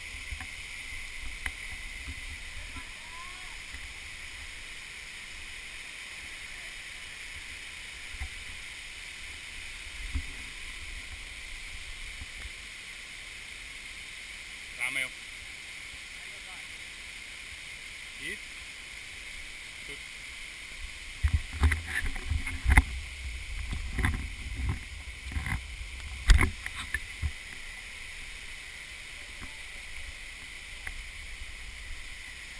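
Steady rushing hiss of a waterfall beside the trail. About two-thirds of the way through comes a burst of thumps and knocks from footsteps and from hands on the camera as the climber scrambles up over tree roots.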